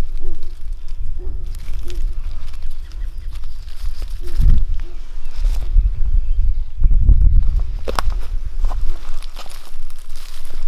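Dry leaf litter rustling and crackling under hands and feet as morel mushrooms are picked from the forest floor, over a low rumble of wind or camera handling on the microphone.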